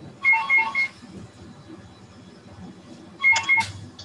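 Short electronic beeps, a quick run of about three near the start and another run near the end, typical of a notification tone.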